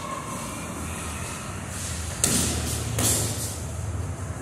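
Boxing gloves landing punches: two sudden thuds about a second apart, over a steady low hum.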